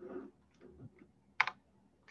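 A sharp computer keyboard key click, doubled in quick succession, about one and a half seconds in, advancing a presentation slide; a few faint soft sounds come before it.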